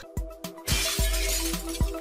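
Logo-intro music: a sustained chord over a heavy, slow beat, with a shattering-glass sound effect swelling in and fading about a second in.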